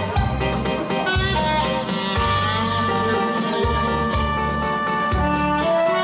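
Live Korean trot-style band music: a saxophone carrying the melody in sustained notes over keyboard backing, with a steady bass and drum beat.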